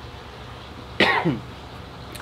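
A man coughs once, short and sudden, about a second in.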